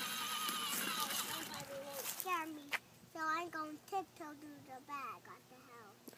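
A toddler vocalizing without words: a held, wavering note for the first two seconds, then a run of short rising and falling syllables.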